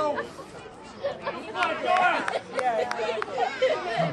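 Several spectators' voices chattering, unworded, with a short run of sharp clicks in the middle.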